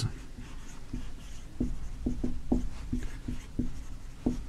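Dry-erase marker writing on a whiteboard: a quick run of short strokes, starting about a second in, as letters are written.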